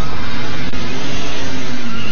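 Motorcycle engine revving as the dirt bike pulls away, its note sliding slightly lower.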